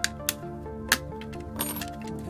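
Sharp clicks of a blunt metal cutter blade prying at the seam of a plastic remote-control case, three clear clicks within the first second, then a short scraping rustle near the end. Background music plays throughout.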